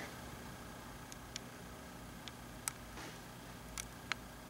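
Quiet room tone with about six small, sharp clicks scattered over the four seconds, the strongest about two-thirds of the way through.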